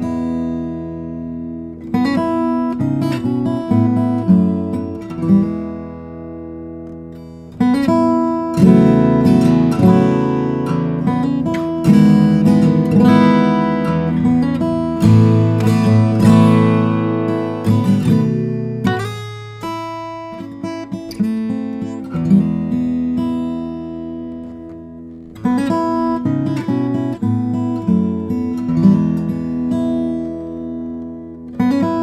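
Cedar-top, Indian rosewood grand concert acoustic guitar (a Tony Vines CX) played fingerpicked: chords and single notes struck and left to ring out, fading briefly twice before each new phrase.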